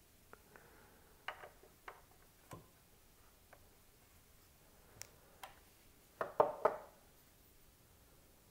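Small scattered clicks and taps of a hand Torx driver on the CPU socket's metal retention screws and frame, with a louder cluster of several clicks a little past six seconds.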